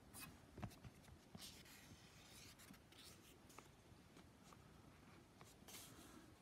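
Faint rustling and soft clicks of sketchbook paper pages being handled and turned.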